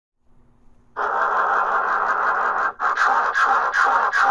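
Loud harsh noise that starts suddenly about a second in, steady at first, then pulsing about three times a second with brief dropouts from a little before the three-second mark.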